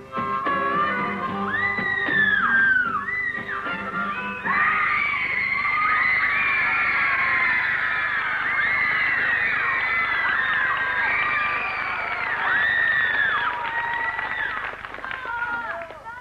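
A blues band's last notes, with harmonica, die away over the first few seconds while an audience begins to scream. From about four seconds in, many high voices scream and cheer, rising and falling, until the sound drops away near the end.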